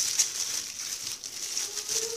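Thin plastic produce bag rustling and crinkling as a bag of green chili peppers is lifted and moved by hand, with a few faint clicks over a steady high hiss.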